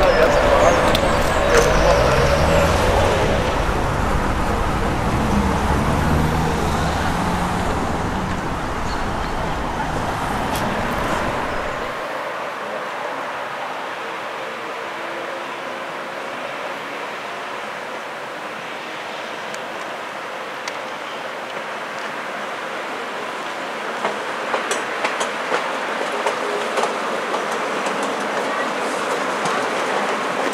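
Road-traffic ambience: a steady background of running and passing motor vehicles, fuller and rumbling for the first twelve seconds, then thinner after a sudden change. A few clicks and ticks come in over the last several seconds.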